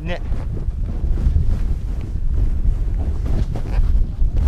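Wind buffeting a GoPro HERO4 Silver's microphone at speed on a snowboard run, a steady low rumble.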